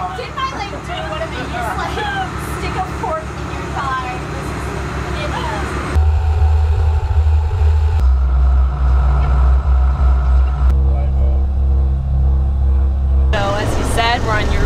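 Dive boat's engines running underway, a loud steady low drone that comes in about six seconds in, after voices and laughter.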